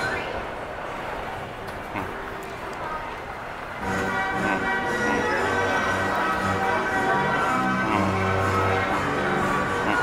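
Carousel music playing, with a tune over bass notes; it grows louder and fuller about four seconds in.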